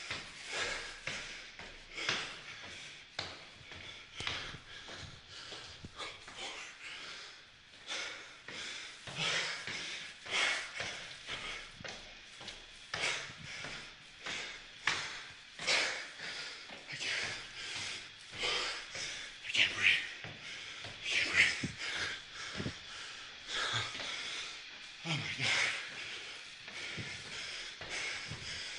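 A man breathing hard and fast, panting in and out roughly once a second while climbing stairs: he is badly out of breath from the exertion.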